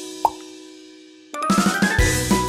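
Children's background music in a break: a held chord fades away, a short sharp upward blip sounds about a quarter second in, then a quick rising run of notes leads the drum beat back in about a second and a half in.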